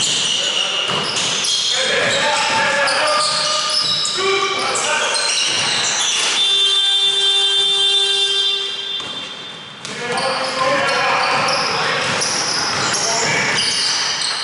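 Indoor basketball game: players' voices echoing in a large hall and a ball bouncing on the wooden court. About six seconds in, a steady buzzer tone sounds for about three and a half seconds, then fades.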